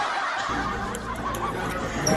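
A man laughing quietly.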